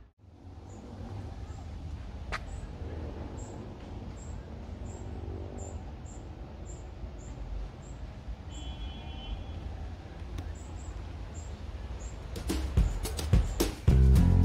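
Outdoor ambience: a steady low rumble with small birds chirping faintly and repeatedly, and one short call about halfway through. Strummed guitar music starts about a second and a half before the end.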